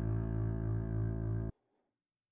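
A low, sustained pitched sample, rich in overtones, played back once by a software one-shot sampler built in Max gen~, triggered at MIDI note 52, below its root note of 60. It cuts off abruptly about one and a half seconds in, as the playback ramp reaches the end of the sample.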